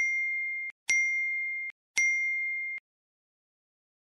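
Three identical electronic chime sound effects, clear single-pitched dings about a second apart, each cut off sharply after under a second.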